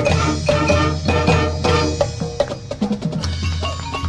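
High school marching band playing its field show: held chords under drum and mallet-percussion strikes.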